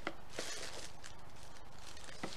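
Faint crinkling of a cellophane treat bag being pressed down into a small cardboard gift box, with a couple of light clicks at the start.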